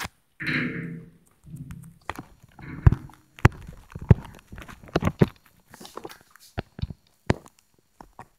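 A brief child's voice sound near the start, then an irregular run of sharp knocks and taps, loudest about three seconds in.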